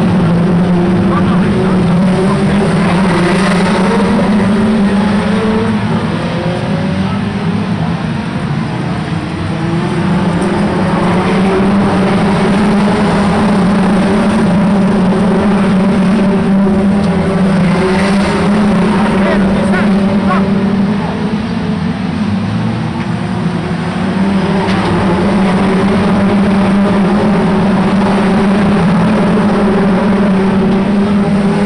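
A pack of 2-litre hot rod race cars racing on an oval track, many engines running hard at once with overlapping, wavering notes as the cars pass and slide through the turns. The sound is loud and continuous, easing slightly twice as the pack moves further off.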